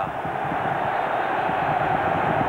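Football stadium crowd noise: a steady, even wash from the stands, with no single shout or chant standing out.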